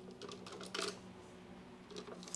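Paintbrush stroking oil paint onto a canvas: a few faint, brief scratchy strokes in the first second, over a low steady hum.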